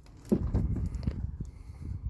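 A worn leather Chippewa Super Logger work boot being gripped and flexed right at the microphone: a sharp knock about a third of a second in, then low rustling and rubbing with a few lighter knocks.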